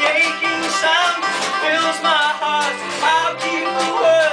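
Live acoustic folk band playing and singing: several voices singing together over plucked banjo and double bass.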